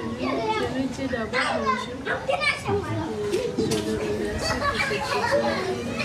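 Several children's voices chattering and calling out at once, high-pitched and overlapping without a break.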